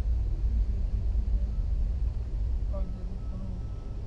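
Passenger train running, heard from inside the carriage: a steady low rumble that eases slightly in the second half.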